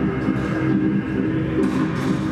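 Instrumental music with a dense layer of sustained low notes.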